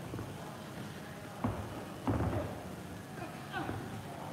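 Boxing gloves landing punches in sparring: a sharp smack about a second and a half in, then a louder flurry of hits around two seconds, over a steady low hum. A short voiced sound, a grunt or exhale, comes near the end.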